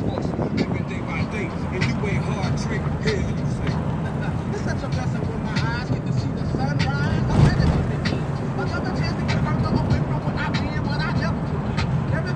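Steady rumble of a car's engine and tyres, heard from inside the cabin while driving slowly on a rough lane, with a single jolt about seven and a half seconds in.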